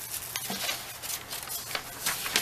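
Rustling and small irregular clicks of things being handled, a scattered crackly shuffling with no steady rhythm.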